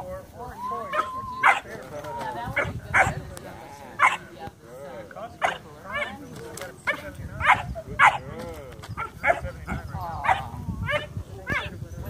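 A 12-week-old German Shepherd puppy barking repeatedly in short, high-pitched barks, roughly one a second, as it lunges on the leash at a training rag.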